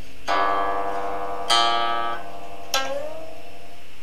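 Guqin, the bridgeless seven-string Chinese zither, plucked slowly: three plucked notes or chords about a second apart, each left to ring. On the third the pitch dips and slides upward as the left hand glides along the string.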